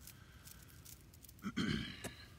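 A man's short, throaty grunt about one and a half seconds in, against a quiet background.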